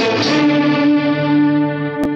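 Electric guitar with effects and some distortion in a 1960s Bollywood film-song intro, settling onto one long held note that rings on and fades near the end.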